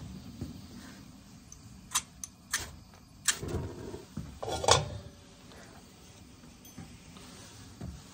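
A few sharp clicks and light knocks, spread between about two and five seconds in, as a stainless steel skillet is handled on a camp stove.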